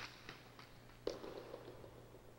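Hard jai alai pelota knocking against the fronton walls during a carom shot that wins the point. There is a sharp knock at the start, a few faint ticks, then a louder knock about a second in that trails off in the hall's echo.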